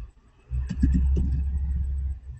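A loud, low, steady rumble starts suddenly about half a second in and lasts nearly two seconds. A few sharp keyboard clicks from typing code sound over its first half.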